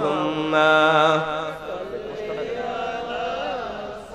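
A man's amplified voice chanting the durood (salutation on the Prophet), holding a long ornamented note with a wavering vibrato that breaks off about a second in. Quieter wavering singing carries on after it.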